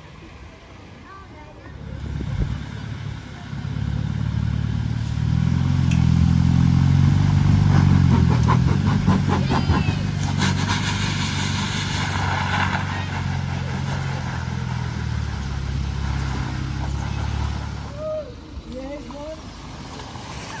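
Car engines running at close range as vehicles drive slowly past on a wet road, loudest about a third of the way in, with a drop in level near the end.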